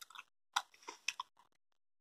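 Faint wet mouth clicks and smacks of someone chewing a soft salmiak-filled liquorice sweet, in short irregular bursts.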